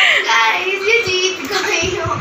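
A young girl's voice singing a few high, wavering notes, with a couple of soft thumps near the end.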